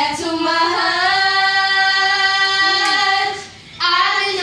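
A girl singing unaccompanied, holding one long steady note for about three seconds, then a short breath before the singing picks up again near the end.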